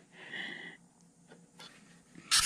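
A short, faint breath of air from a person near the microphone, followed by a couple of light clicks.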